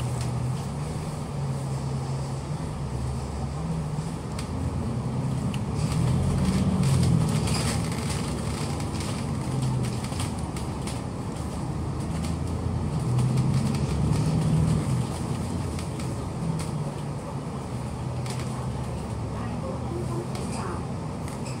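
Double-decker bus engine heard from inside the cabin, idling at a stop and then pulling away. The engine pitch shifts as the bus gathers speed, with two louder stretches of acceleration, about six to eight seconds in and again around thirteen to fifteen seconds in.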